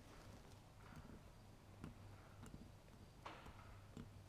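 Near silence: faint room hum with a few soft clicks as the idle screw of a Marvel-Schebler carburetor is turned in by hand.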